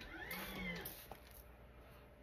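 A single meow-like cry from a house pet, rising and then falling in pitch over about a second.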